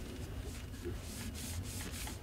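Cotton gloves rubbing and brushing against a zoom lens's barrel as the lens is turned in the hands: a series of soft, scratchy strokes.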